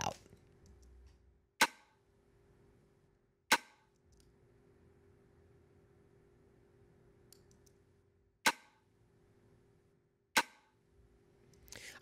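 Sampled snap-and-snare drum hits played back through a hard-knee compressor at 10:1 with zero attack and a release of a few milliseconds. Four sharp hits sound: two about two seconds apart, a gap of about five seconds, then two more, over a faint steady hum.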